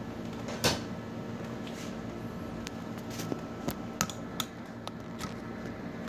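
Scattered clicks and light knocks from handling metal parts on the opened steel back chassis of an LED TV, the sharpest about half a second in and a few smaller ones later, over a steady background hum.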